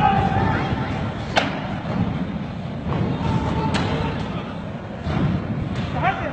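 Several sharp bangs echo through a large hall, about a second and a half in, near the middle and near the end, over a steady low rumble of commotion and raised voices.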